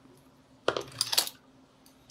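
A screwdriver set down on a workbench among small metal parts: a quick cluster of sharp metallic clinks around the middle, lasting about half a second.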